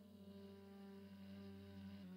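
Near silence with faint background music under it, a steady held note that does not change.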